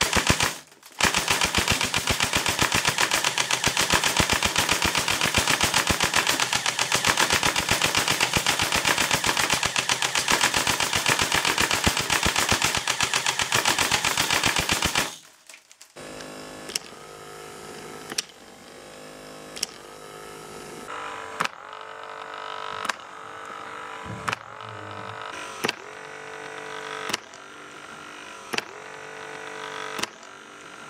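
G36 airsoft electric gearbox firing BBs on full auto: a rapid, even stream of shots that runs about fourteen seconds and stops abruptly. After that, a much quieter stretch of steady tones with a sharp click about every second and a half.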